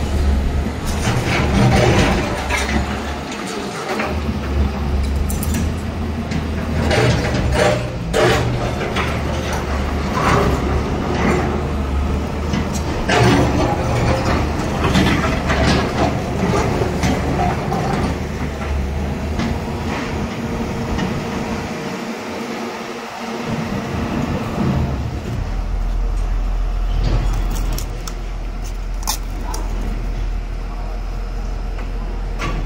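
A Hyundai excavator's diesel engine running steadily under repeated clanks and crashes as it pulls down brick and concrete walls. The engine rumble drops out a little past two-thirds of the way through.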